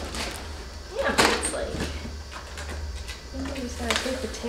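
Cardboard jack box being handled, with a loud scraping rustle about a second in and a sharp click near the end.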